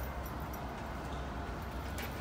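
Steady low hum of running kitchen equipment, with a few faint clicks near the start.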